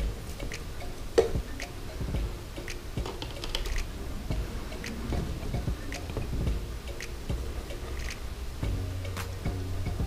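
Long metal aquascaping tweezers clicking and scraping into damp gravelly substrate as plants are pushed in, a scatter of small irregular ticks with one sharper click a little over a second in.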